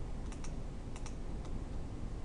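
Short, sharp clicks of a computer mouse and keyboard: two quick pairs and then a single click, over faint room noise.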